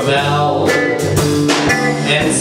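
Live band music: an acoustic guitar strumming chords on a steady beat, with an electric guitar playing alongside.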